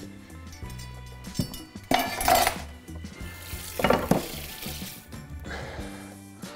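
Tap water running and splashing in a kitchen sink as a wooden cutting board is rinsed, in several rushing spurts about 2, 4 and 5.5 seconds in, over steady background music.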